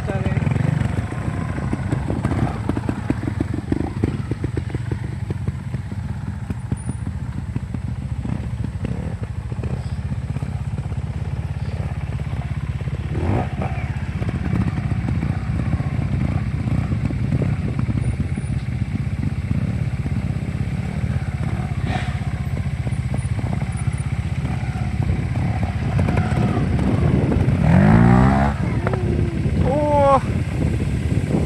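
Trials motorcycle engines running at low revs, with short blips of throttle as the bikes are turned on dirt; a rising rev near the end is the loudest moment.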